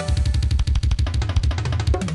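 Rock instrumental music: a fast, even drum roll on a kit, about a dozen strokes a second, over a steady bass note.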